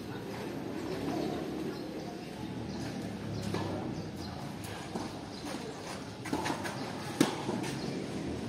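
Tennis racket strikes and ball bounces on a court: several light knocks, the loudest a sharp racket hit about seven seconds in, over a faint background murmur.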